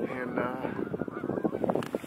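Wind rushing on the microphone, with faint, quieter speech in between.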